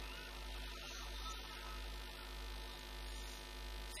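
Steady electrical mains hum through the microphone and sound system, a low buzz with no other sound over it.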